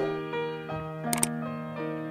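Electric piano playing sustained chords of a slow song intro. About a second in, a sharp double click like a camera shutter, the sound effect of an animated subscribe button, cuts over the music.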